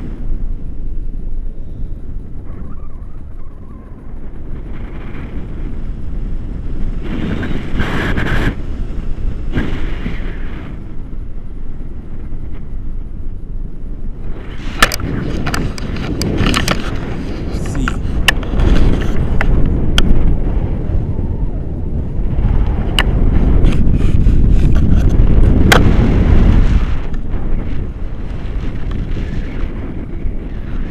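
Wind rushing over an action camera's microphone in paraglider flight, a loud low rumble that swells and eases in gusts. Sharp crackles from the buffeting come through in the second half.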